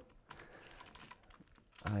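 Light, scattered keystrokes and clicks on a computer keyboard, a few irregular taps over a low background hiss.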